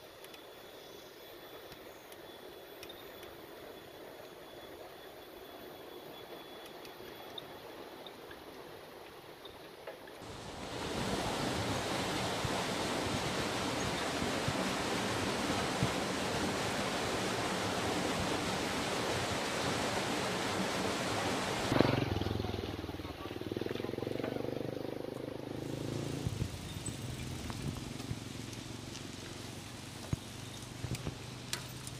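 Rushing river water below a bridge, a loud steady hiss that starts suddenly about ten seconds in and drops away about twelve seconds later. Before and after it, quieter outdoor noise of riding, with a click and a brief voice-like sound just after the water fades.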